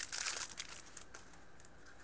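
Plastic wrapping around a stack of trading cards crinkling and tearing as it is pulled open, busiest in the first half second, then thinning to faint scattered crackles.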